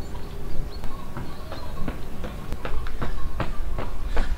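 Running footsteps on a paved lane, short sharp footfalls at about three a second, with wind rumbling on the microphone.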